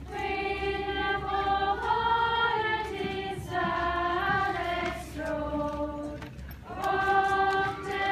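A girls' Lucia choir singing a Swedish Christmas carol, unaccompanied, in several voices. The carol moves in long held notes, phrase by phrase, with brief breaths at about three, five and six and a half seconds in.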